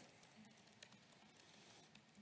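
Faint laptop keyboard typing, a few soft key clicks over near-silent room tone.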